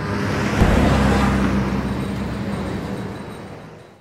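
A deep boom about half a second in, then a low rumbling drone with a hiss over it that fades away toward the end: the trailer's closing sound design.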